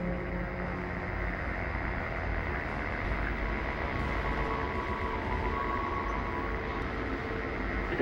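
Dark cinematic ambient drone: a steady, dense low rumble with faint sustained tones that come in around the middle.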